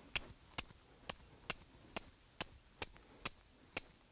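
Steel striker struck repeatedly down a piece of flint: about nine sharp, short strikes, roughly two a second, throwing sparks onto a scrap of char cloth to catch an ember.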